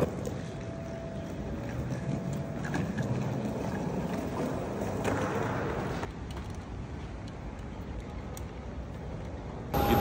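Steady low background rumble of a large, nearly empty airport terminal's interior, with a faint steady tone in the first couple of seconds.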